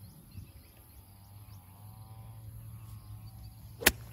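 A golf iron strikes the ball once near the end, a single sharp click. Before it, faint bird calls and insect chirps.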